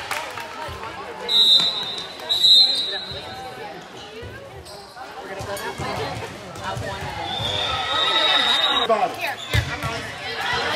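Referee's pea whistle in a gym: two short blasts about a second apart, then one longer blast near the end, over crowd chatter and a ball bouncing on the hard court.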